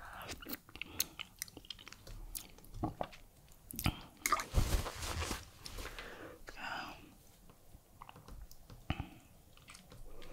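Close-miked eating sounds: chewing and wet mouth clicks and smacks of fufu with palm-nut soup, with a louder, longer wet sound about four to five seconds in.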